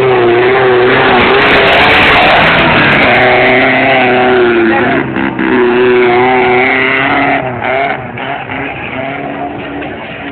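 Suzuki Samurai's four-cylinder engine revving hard as the 4x4 drives through deep mud, its pitch rising and falling with the throttle. It passes close, then drops away and is quieter after about seven and a half seconds.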